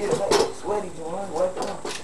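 Indistinct voices talking.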